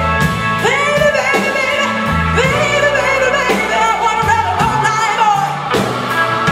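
Live soul band: a female singer's sliding vocal lines, with a long held note in the second half, over electric guitar, bass and drum kit with steady drum hits.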